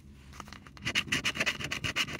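A coin scratching the coating off a paper lottery scratch-off ticket, quick repeated strokes several a second, starting about a second in.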